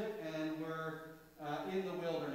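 Slow, chant-like singing in long held notes, with a short break about one and a half seconds in before the next note.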